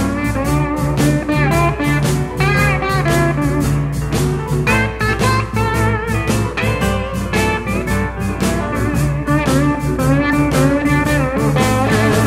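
Electric blues band playing an instrumental break: a lead guitar with bent notes over bass and drums keeping a steady beat.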